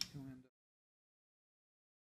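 Dead silence: the sound track cuts out completely after a single sharp click at the very start and about half a second of faint low sound.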